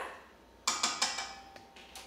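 A small metal measuring spoon tapping a few quick times on a stainless steel mixing bowl a little over half a second in, the bowl ringing briefly after.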